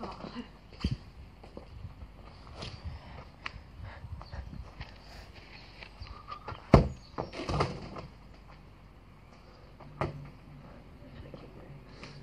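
Scattered thuds and taps of a football being kicked and metal crutches planting on artificial grass, with one sharp, loud thud about two-thirds of the way in.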